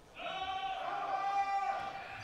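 A person's long call held on one steady pitch for about a second and a half, fading near the end, sounding over the gym as the serve is made.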